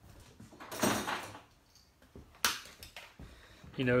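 Handling noises off-microphone: a rustling scrape about a second in, then a single sharp knock about a second and a half later. A man's voice starts near the end.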